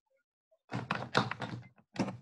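A quick run of thumps and knocks, lasting about a second after a short silence, with one more knock at the end.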